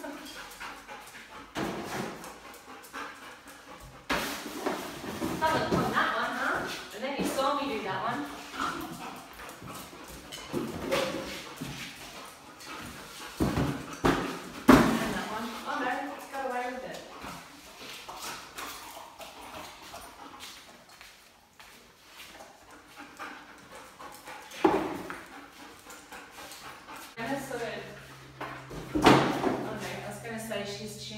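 A dog searching among cardboard boxes on a tiled floor for a hidden scent, with scattered sharp knocks and scuffs as it noses and bumps the boxes, the loudest about halfway through and near the end. A voice is heard at times.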